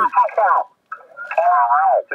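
Voices of other amateur stations coming through the HF transceiver's speaker: thin, narrow-band single-sideband speech, cutting out briefly a little under a second in.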